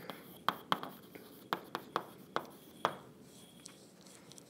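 Chalk writing on a blackboard: a string of sharp taps and short scratchy strokes, about seven, spaced irregularly over the first three seconds, then stopping.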